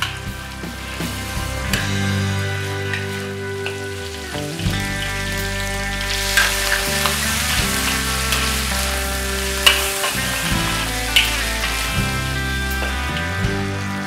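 Chicken and shrimps sizzling in a hot wok as a metal wok spatula stirs and scrapes them against the pan, over background music with slow held notes.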